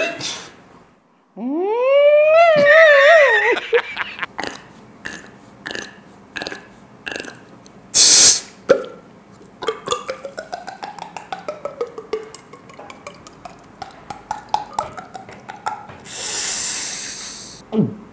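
A person imitating a siren with the voice: a wail that sweeps up and then wavers in pitch for about two seconds. Then comes a long run of mouth clicks and beatbox-style percussive sounds, with a sharp burst about halfway and a long hiss near the end.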